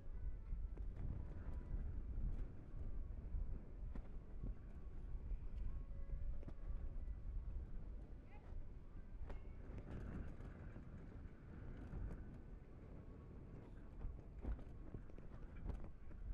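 Hoofbeats of a horse cantering and turning on the soft sand of a campdraft camp yard as it works a cow, as scattered knocks over a steady low rumble.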